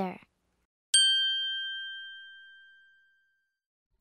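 A single chime struck once about a second in, one clear high ding that rings and fades away over about two seconds: the cue that separates one dialogue from the next on a recorded listening exercise.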